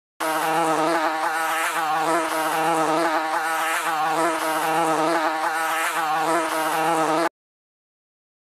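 A fly buzzing steadily, its pitch wavering up and down as it flies about, then cutting off suddenly near the end.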